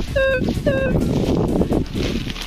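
Minelab Explorer metal detector sounding a target: short, flat, fairly low beeps, two in the first second, signalling a buried metal object under the coil. The coil rustles and scrapes through dry cereal stubble.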